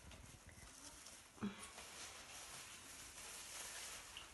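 Quiet room with faint handling noise from a gloved hand on a potted plant's pot, and one short low sound about a second and a half in.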